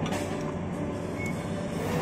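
Steady low hum of restaurant room noise, with faint music in the background.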